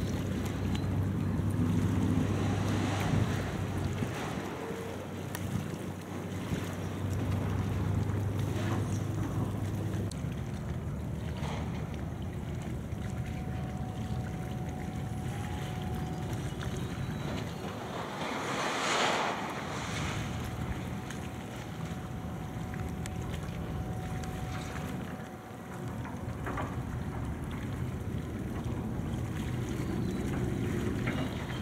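Crane machinery at a scrap-handling dock running with a steady low engine hum, strong for the first ten seconds and fainter after, with wind on the microphone. A louder burst of noise comes about nineteen seconds in.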